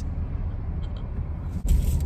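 Car engine idling, heard from inside the cabin as a steady low rumble, with a short rustling burst shortly before the end.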